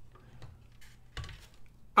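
Light clicks and a soft knock about a second in from plastic parts of an opened robot vacuum being handled, over a faint steady low hum.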